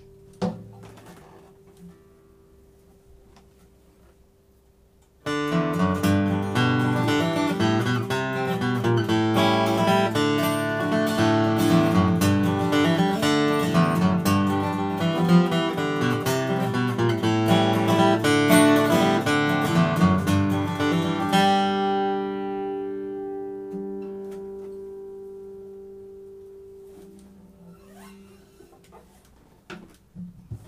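Collings 12-fret dreadnought acoustic guitar, sitka spruce top and phosphor bronze strings, flat-picked with a pick in a short passage that leans on the bass. It starts about five seconds in and ends on a chord that rings out and fades over several seconds. A few knocks from handling the guitar come at the start and near the end.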